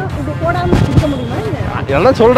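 A deep, sudden thud about a second in, amid voices talking.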